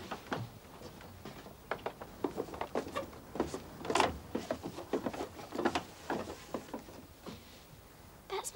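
Footsteps on wooden steps, people climbing down inside a wooden windmill: a run of irregular knocks and thuds, the loudest about four seconds in.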